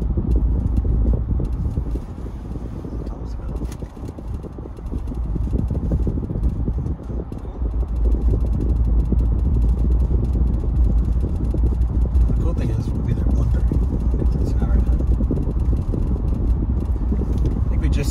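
Cabin noise of a car driving on a highway: a steady low rumble of engine and tyre noise on the road. It eases off for a few seconds early on, then builds back up and holds steady.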